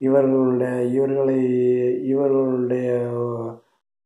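A man's voice chanting on one steady pitch: two long held notes with a brief break about two seconds in, stopping about three and a half seconds in.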